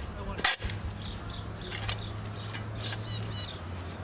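Outdoor street ambience: a steady low hum, a single sharp click about half a second in, and two faint bird chirps near the end.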